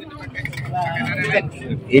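People talking close by over a low, steady hum.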